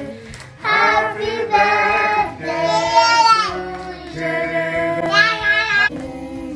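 A voice singing a melody in long held notes, in about three phrases.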